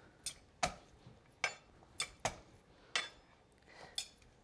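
Kitchen knife knocking on a wooden cutting board as peeled garlic cloves are crushed under it: about six short, sharp knocks at uneven intervals.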